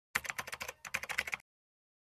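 A clicking sound effect on the end-card animation: a quick run of sharp clicks, about ten a second, in two bursts with a short break in the middle, lasting just over a second and cutting off suddenly.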